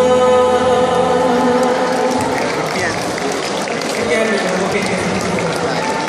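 Four-part vocal quartet (bass, tenor, alto, soprano) holding a final chord through the hall's PA, which dies away about two seconds in. Audience applause and voices follow.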